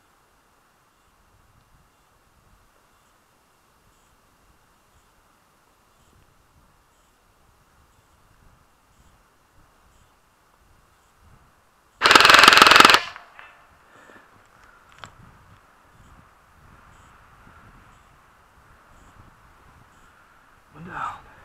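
A single burst of rapid automatic fire, about one second long and loud and close, from a Classic Army airsoft light machine gun (an electric AEG), followed by rustling of the shooter moving.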